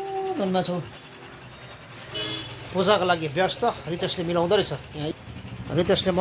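Speech: a person's voice talking in short phrases, opening with one drawn-out vowel, with a brief high tone about two seconds in.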